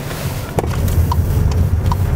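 Low, steady rumble of a VW T-Roc's engine and running gear heard from inside the cabin as the car pulls away, growing slightly stronger about halfway through, with a few faint ticks.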